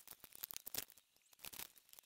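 Faint scattered clicks and rustles, a cluster of quick ticks in the first second and a shorter cluster about a second and a half in.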